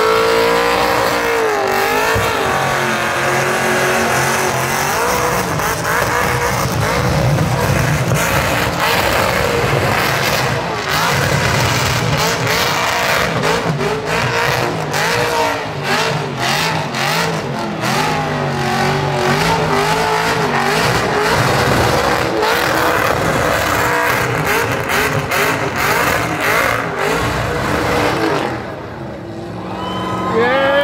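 LS V8 engine of a Holden VY ute held at high revs through a burnout, the rear tyres spinning on the pad, the engine repeatedly hitting the rev limiter. The engine note drops away about a second and a half before the end.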